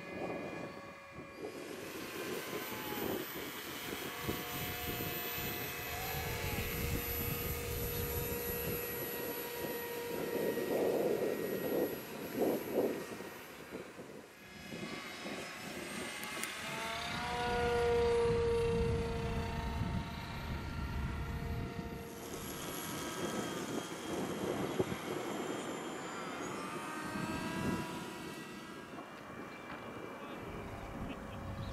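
Radio-controlled model airplanes flying overhead, their motors and propellers running with a pitch that rises and falls as they throttle and pass by.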